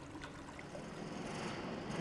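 Faint, steady outdoor background noise without a clear source, growing slightly louder toward the end.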